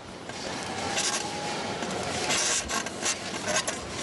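Steel horizontal bar creaking and rattling under a gymnast's giant swings, coming in repeated surges, over steady arena crowd noise.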